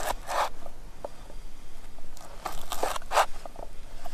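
A large kitchen knife slicing through an onion on a wooden cutting board: a few crunchy cuts, one near the start and a quick cluster toward the end, with small knocks of the blade on the board.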